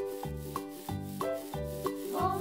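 Felt-tip marker rubbing over a small foam cylinder as it colours it in, under a children's instrumental tune with a steady beat.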